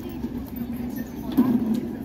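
Indistinct voices of people talking in the background over a low steady rumble, with one short knock about one and a half seconds in.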